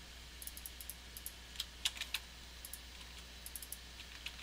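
Faint, irregular clicks of computer keyboard keys and mouse buttons, a few dozen light taps scattered unevenly, over a steady low hum.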